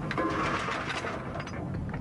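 Ship's deck winch heaving in a lifting chain: a mechanical whirring rattle that thins out near the end.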